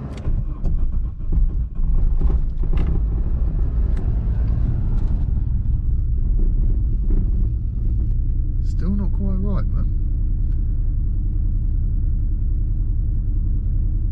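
Mk2 VW Golf GTI's four-cylinder petrol engine firing up: uneven for the first couple of seconds, then settling into a steady low idle. It has just had its head gasket redone with the camshaft timing still being set, and its owner judges that it isn't running right.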